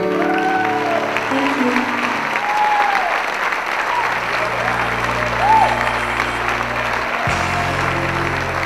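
Audience applauding and cheering, with short rising-and-falling shouts or whistles over the clapping, while held musical notes continue underneath; a new low note comes in about four seconds in and another near the end.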